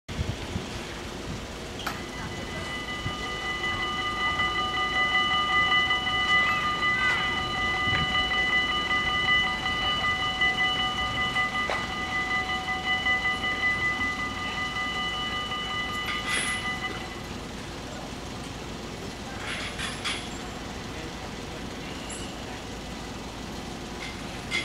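Dutch level-crossing warning bells ringing steadily, the signal that the barriers are closing for an approaching train. They start about two seconds in and stop about seventeen seconds in, over a background rumble that swells in the middle.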